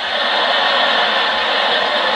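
Stand-up audience laughing and applauding after a punchline, a steady crowd roar.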